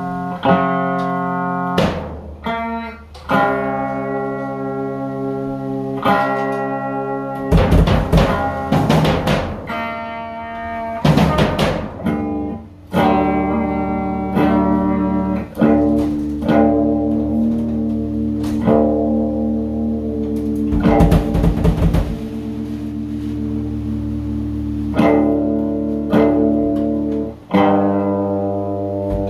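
Electric guitar playing long held chords that ring on for several seconds, broken a few times by short clusters of rapid, sharp hits.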